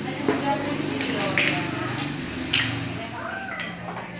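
Indistinct background voices in a room, with a couple of light knocks.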